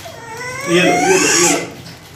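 A young child's drawn-out, wavering whining cry, rising and falling in pitch for about a second and a half.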